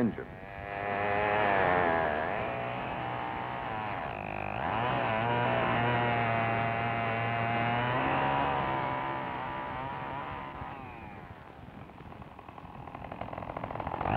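A 1950s gasoline chainsaw started the way an outboard engine is, catching and revving up, its pitch dipping about four seconds in, then running steadily before it winds down and fades near the end.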